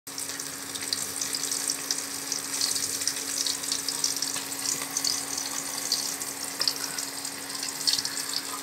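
A steady crackling hiss, like food sizzling in hot oil or running water, over a steady low hum.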